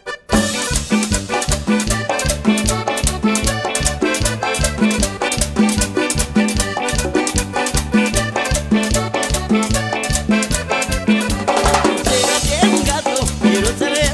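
Live cumbia band playing an instrumental opening: accordion over congas, drum kit and electric bass with a steady, danceable beat. It kicks in a moment after the start.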